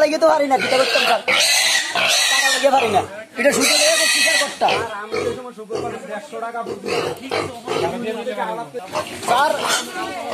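Piglet squealing while restrained and injected with a syringe: two long, shrill screams about a second and a half and four seconds in, then shorter squeals and grunts from the pen.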